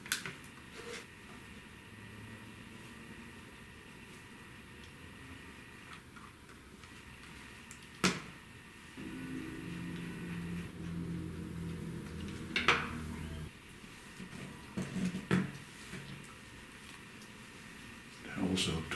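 Small plastic clicks and taps from a Philips DCC portable cassette player's housing being pressed together and worked with a small screwdriver, with sharper clicks about eight and thirteen seconds in. A low steady hum runs for a few seconds in the middle.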